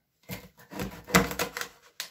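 Large kitchen knife chopping through cleaned roach, the blade knocking on a plastic cutting board about four times, loudest a little after a second in.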